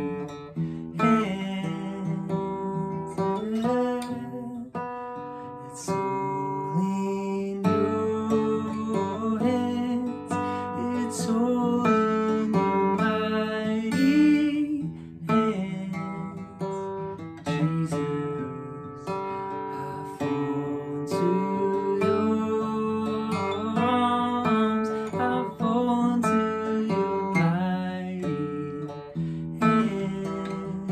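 Acoustic guitar strummed and picked in a steady rhythm through a chord progression, the instrumental introduction before the song's first sung line.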